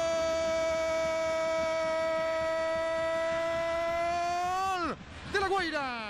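Spanish-language football commentator's long drawn-out goal cry, one held vowel at a steady pitch for about five seconds that drops away sharply near the end. A shorter falling shout follows.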